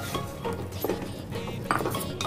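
Wooden spatula stirring boiled corn kernels through thick spinach gravy in a cooking pot, with a couple of light knocks against the pot, over soft background music.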